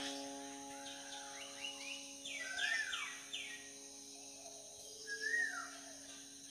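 Birds chirping: a few arching calls, a quick run of three or four falling notes about two and a half seconds in, and another call about five seconds in, over a faint steady insect hiss. A held musical chord fades out over the first few seconds.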